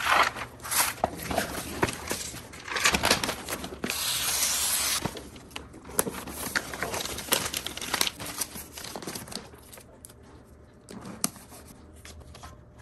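Rustling and crinkling handling noises with scattered clicks, and a steady hiss lasting about a second about four seconds in.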